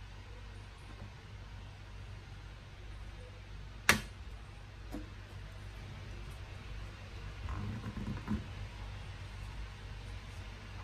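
Handling sounds from a small plastic hand-press citrus juicing cup as orange and lime halves are set on it and pressed: one sharp plastic click about four seconds in, a lighter click a second later, and soft knocks and rubbing near the end. A steady low hum runs underneath.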